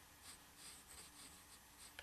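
Faint scratching of a graphite pencil on paper as short sketching strokes are drawn.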